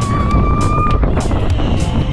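Roller coaster in motion: a steady low rumble of the train on its track with repeated gusts of wind on the microphone, and music over it. A single high held note, like a rider's 'woo', runs through the first second.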